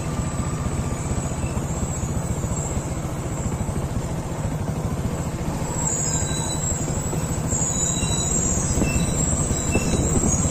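Steady low rumble of vehicle noise with a rushing hiss, growing a little louder in the second half.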